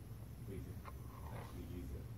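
Faint, distant speech of an audience member asking a question away from the microphone, over a steady low hum.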